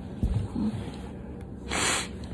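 Handling noise as a hand brushes through hair and over a flannel shirt close to the phone's microphone: rubbing with a few low bumps in the first second. Near the end comes a short sniff.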